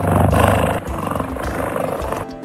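A big-cat roar played as the jaguar's sound, one long call that is loudest in the first half second and then goes on lower for over a second, over soft background music.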